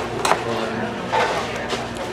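Busy fast-food dining room: a steady murmur of other diners' chatter, with a brief sharp click about a quarter second in.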